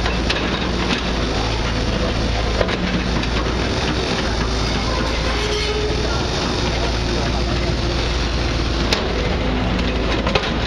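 Truck-mounted crane's engine running steadily under indistinct background chatter of voices, with a single sharp crack about nine seconds in.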